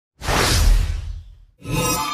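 Whoosh sound effect of an animated logo intro: a swell of rushing noise that fades over about a second. Near the end a second hit comes in, leaving a sustained ringing chime-like tone.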